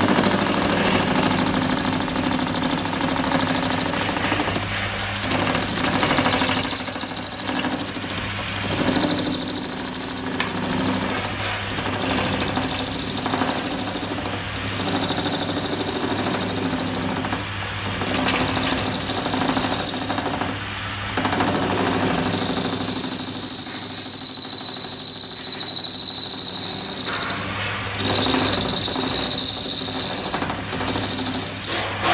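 Belt-driven metal lathe running, its mechanical clatter joined by a steady high-pitched squeal that swells and fades about every three seconds.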